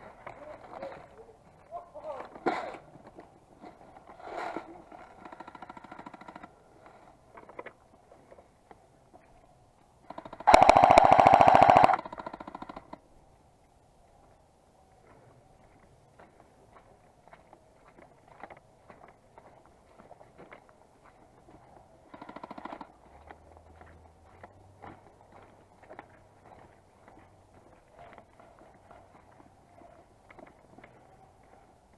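Airsoft M249-style support weapon firing one full-auto burst of about a second and a half, about ten seconds in, the loudest sound here. Short clicks and a few brief, much quieter bursts come before and after it.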